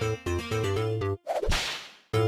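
A bouncy intro jingle stops a little past a second in, followed by a cartoon whip-crack sound effect, a sudden swish that fades out.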